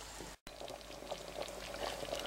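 Faint liquid sounds from a stainless-steel pot of simmering curry broth, with soft sloshes and small splashes as a ladle is dipped in and lifted out. The sound cuts out for an instant a little under half a second in.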